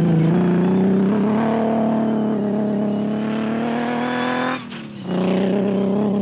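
Off-road race buggy's engine running hard under load, its note climbing steadily for about four and a half seconds. A short break follows and the note picks up again lower and holds steady.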